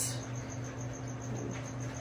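Room background: a steady low hum with a faint high-pitched tone pulsing about seven times a second, and no distinct event.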